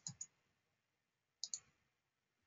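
Computer mouse button clicking, a quick double click about one and a half seconds in, against near silence.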